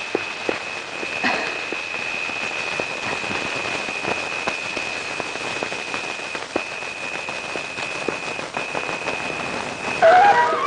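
A steady rain-like hiss with a constant high-pitched whine running through it, briefly breaking twice in the second half, and a few scattered clicks.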